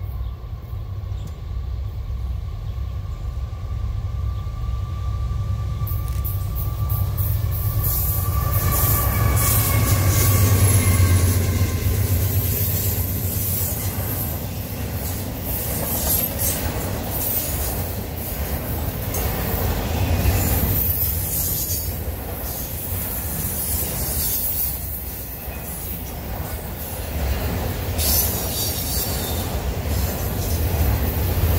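Intermodal freight train approaching and rolling past close by: a deep rumble swells to its loudest about ten seconds in, then the container and trailer cars go by with a high hiss of steel wheels on rail and repeated clicks.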